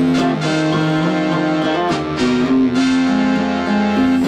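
Live band music: electric guitar strumming with an electric keyboard, held notes under a guitar riff, in a stretch without singing.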